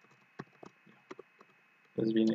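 Computer keyboard being typed on: five or six separate, faint key clicks spread over the two seconds.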